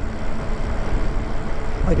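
Wind rushing over the microphone while riding an electric bike down a street, with a low rumble from the wind and road.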